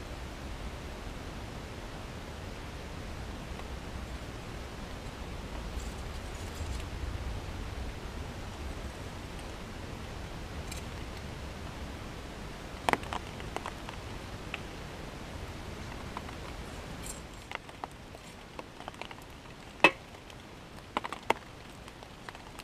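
Steel pliers clicking sharply against a small piece of hot steel as it is bent into a fish hook, a few separate clicks in the second half, over a steady low rumble that thins out about two-thirds of the way through.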